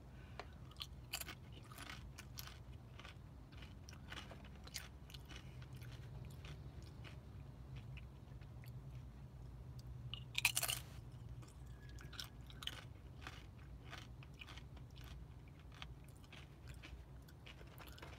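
A person biting and chewing crunchy tortilla chips close to the microphone, with many short crunches throughout and a louder bite crunch about ten seconds in.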